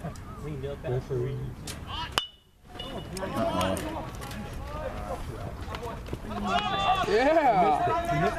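Baseball bat hitting the ball with a sharp crack about two seconds in, after which the sound drops out for half a second. Spectators then shout and cheer, loudest near the end.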